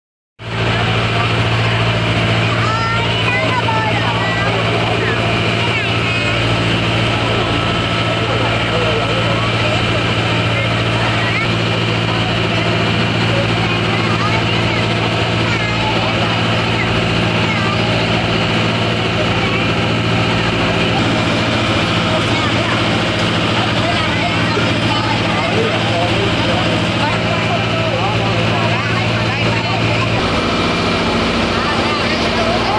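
Engine of a covered river passenger ferry running steadily under way, a constant low hum.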